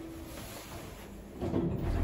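Schindler 3300 lift car stopped at a landing with its doors starting to open: a low steady hum, then a louder sliding rumble from the door mechanism about a second and a half in.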